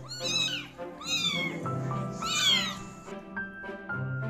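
Young kitten mewing three times, high-pitched calls that rise and fall, over background music.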